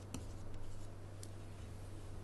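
Faint scratching with a couple of light taps from a stylus writing on a drawing tablet, over a low steady hum.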